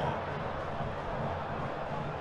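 Stadium crowd noise: a steady, even hubbub of many supporters in the stands, with no single voice or chant standing out.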